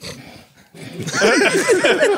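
Several people laughing: a breathy lull, then loud, overlapping laughter from about a second in.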